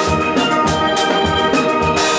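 A steel orchestra of steelpans playing a melody in long held notes with chords beneath, over a drum kit keeping a steady beat with regular kick thumps and cymbal strokes.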